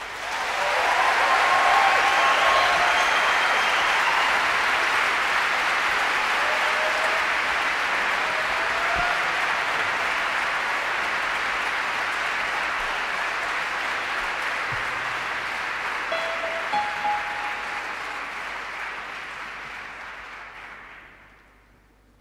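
Concert audience applauding as the song ends, swelling within a couple of seconds, then slowly dying away and fading out near the end, with a few short calls from the crowd.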